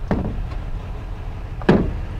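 A 2008 Toyota Tundra's fuel filler door is pushed shut by hand, closing with one sharp click near the end, after a faint click near the start. A steady low rumble runs underneath.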